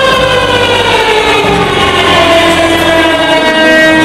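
Live band music: one sustained pitched instrument slides slowly down in pitch over about two to three seconds and then holds a steady note, over steady bass notes.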